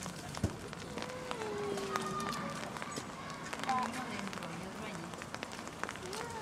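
Indistinct chatter of onlookers in the background, with scattered small clicks and one sharp knock about half a second in.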